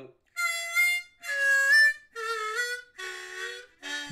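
Harmonica played in four separate notes, each held under a second with short breaks between them.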